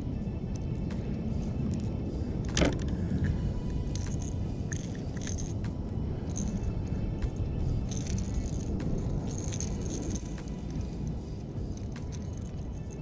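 Steady wind rumble on the microphone, with scattered light clicks and rattles as a just-caught largemouth bass is held and handled in a kayak, and one louder knock about two and a half seconds in.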